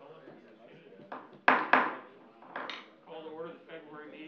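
Several sharp clattering knocks, the loudest two in quick succession about a second and a half in, over low murmured talk.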